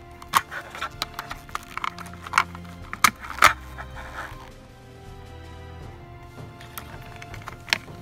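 Background music plays under a series of sharp snaps and cracks as a plastic smoke-detector housing is cut open with a hand cutting tool. The loudest snaps come around three seconds in, and there is a quieter stretch in the second half.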